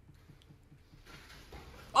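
Quiet room tone, with a faint hiss coming in about halfway through. A man's exclamation begins right at the end.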